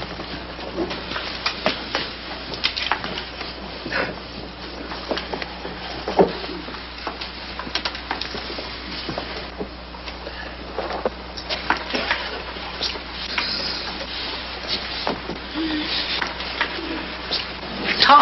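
Pencils scratching on paper, with scattered small clicks and knocks from students writing a test at their desks, over a steady hiss and a low hum.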